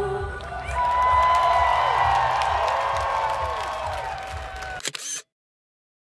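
Live festival music heard from within the crowd: a long held vocal note over the track, with short falling whoops from the audience. The sound cuts off suddenly about five seconds in, leaving silence.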